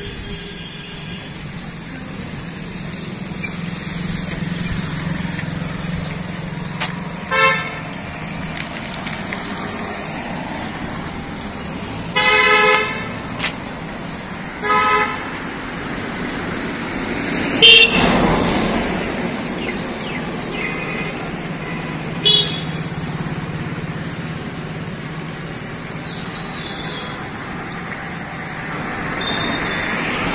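Street ambience with a steady traffic hiss and a vehicle horn honking three times: a short toot about seven seconds in, a longer honk of about a second near the middle, and another short toot soon after. A few short sharp knocks stand out above the background.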